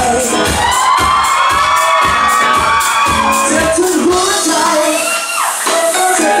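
Live band music with a steady drum beat under a long held sung note, and crowd voices shouting along. The drums and bass drop out about five seconds in.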